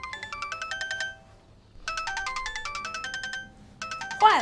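Old keypad mobile phone ringing with an incoming call. Its electronic ringtone melody plays in short phrases that repeat with brief gaps.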